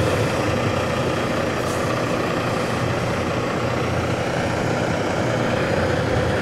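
Diesel engine of a Hongyan Genlyon C500 8x4 truck idling steadily, a low even running sound with a faint constant hum.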